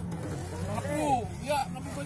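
Axial SCX10 III Jeep Gladiator RC crawler's electric motor running with a low steady drone as it crawls through mud and a puddle. A voice calls out briefly about a second in.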